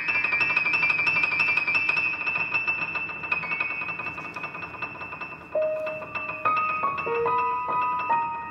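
Grand piano: a fast rising run ends in a rapid high trill that gradually gets quieter, and from about five and a half seconds in, slower separate notes follow in the middle register.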